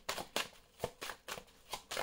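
A deck of oracle cards being shuffled by hand: short, sharp card clicks coming irregularly, about seven in two seconds.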